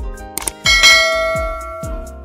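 Background music with a deep kick-drum beat. Partway in, a short click is followed by a bright bell ding that rings out and fades over about a second: the mouse-click and notification-bell sound effect of a subscribe-button animation.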